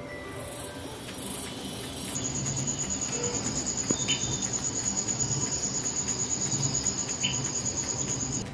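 Crickets chirping in a steady, fast-pulsing high trill, starting about two seconds in, from a nature video's soundtrack played through a projector's built-in speaker.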